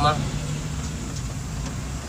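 Car engine and running noise heard from inside the cabin: a steady low hum while driving. A moment of speech at the very start.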